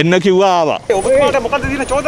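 Speech only: a man answering reporters' questions in Sinhala.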